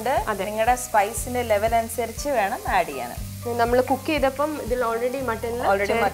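Sliced onions and whole spices sizzling in a steel frying pan as they are stirred, under background music with a melody.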